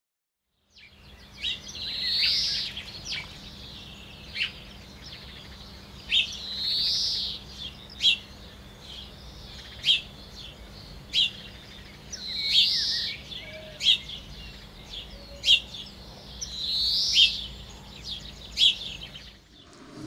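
Birdsong: short, sharp chirps every second or two, with a longer swelling call about every five seconds.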